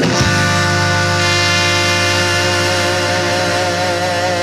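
Live blues-rock band hitting a chord together with a cymbal crash, then the electric guitar and bass let it ring out as one long sustained chord under the cymbal wash, the guitar's held notes wavering with vibrato near the end.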